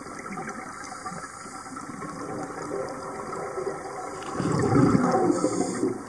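Underwater sound of scuba regulators: a steady watery hiss, then a diver's exhaled bubbles rushing out loudly for about a second and a half near the end.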